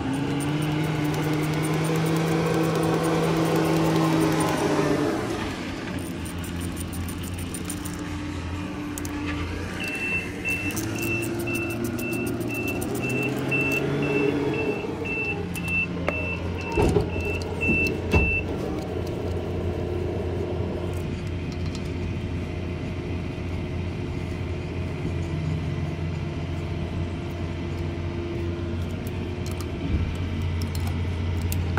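Vehicle engines running, with metallic clinking of hose fittings as air lines are connected to a trailer's tire-inflation hubcap. A high beeping, about two a second, sounds for several seconds midway, and there are two sharp clicks shortly after.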